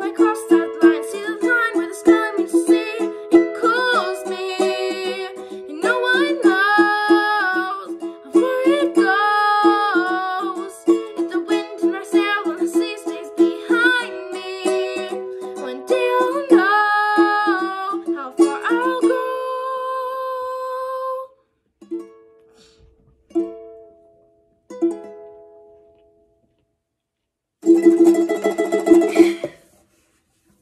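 Alvarez ukulele strummed in a steady rhythm under a girl's singing voice; the singing ends on a long held note about two-thirds of the way through. A few single plucked ukulele notes follow, then a brief pause and one final strummed chord near the end.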